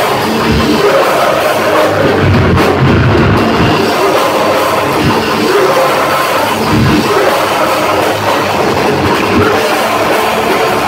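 Heavy metal band playing live and loud: distorted electric guitars over a drum kit, with the vocalist singing into the microphone.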